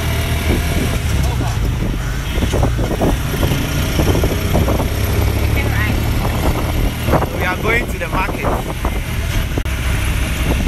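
Three-wheeled tricycle taxi's small engine running steadily under way, with road and wind noise from the open cab. Voices are heard briefly, a couple of times.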